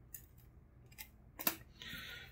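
A few light clicks and taps of small plastic parts from a disassembled Echo Dot being handled and set down, the sharpest about one and a half seconds in.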